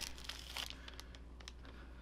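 Tissue-paper wrapping crinkling faintly as a pen is slid out of it, busiest in the first half second, then only a few light crackles.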